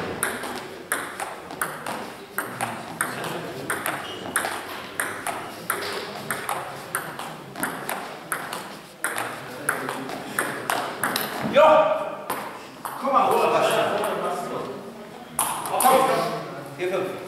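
Table tennis rally: the ball clicks sharply off the bats and table about twice a second for some eleven seconds. The point ends in a loud shout, followed by voices.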